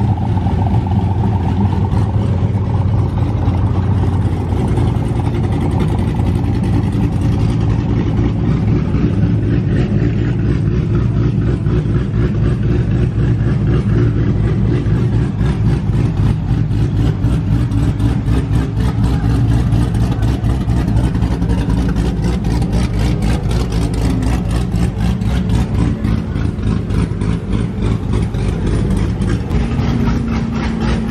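Loud performance-car engines idling and revving as cars roll slowly past, with a steady low drone and a choppy exhaust pulse that grows stronger past the middle.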